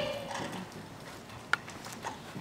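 Footsteps on a stage floor: a few light shoe taps and one sharp knock about one and a half seconds in.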